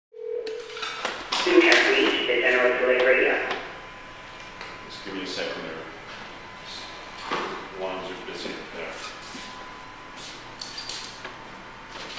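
Indistinct talking, loudest a second or two in, with scattered light clicks and knocks. A short steady tone sounds at the very start.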